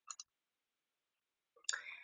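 Near silence broken by a few short clicks just after the start and again near the end.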